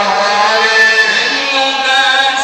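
A young man's voice chanting Maulid praise verses in Arabic, drawing out long melismatic held notes that glide slowly in pitch.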